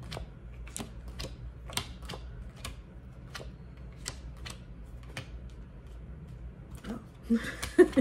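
A tarot deck being shuffled by hand, the cards making sharp, irregular clicks about two a second that thin out after about five seconds. A few louder knocks come near the end.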